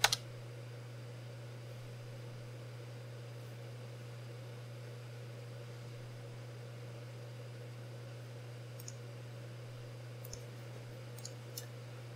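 A single sharp computer key click right at the start, the Enter key launching the acquisition, then a steady low hum with a few faint clicks near the end.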